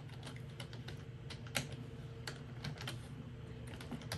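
Typing on a computer keyboard: uneven keystroke clicks, about three or four a second, while logging back onto a computer, over a steady low hum.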